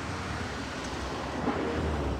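Steady low city street rumble with wind on the microphone, in a gap between phrases of the loudspeaker call to prayer.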